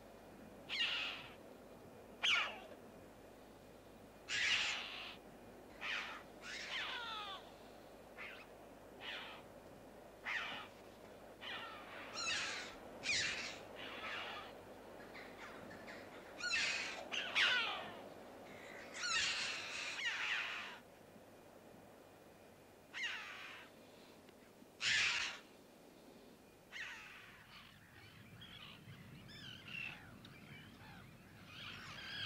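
Red-billed choughs calling in flight: a long series of high, harsh screeches, some single and some in quick pairs, coming at irregular intervals.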